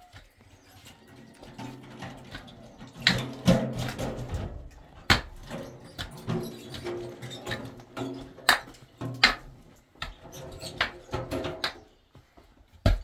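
Pickaxe striking into hard, rocky soil: several sharp hits a second or two apart, with dirt and stones scraping between them. A quieter held pitched sound runs underneath.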